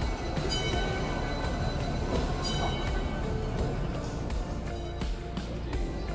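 Background music over the steady low rumble of a slow-moving double-decker street trolley riding its rails.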